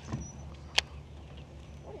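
Low steady hum of a Minn Kota electric trolling motor running, with one sharp click a little under a second in.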